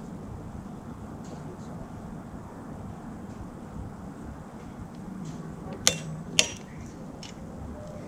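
Click-type torque wrench tightening a saildrive bolt: a few faint ticks, then two sharp metallic clicks about half a second apart near six seconds in, the wrench's click-clack signalling that the bolt has reached its set torque.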